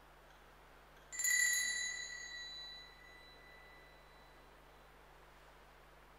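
A small handbell struck once, about a second in: a clear metallic ring that fades away over about two seconds.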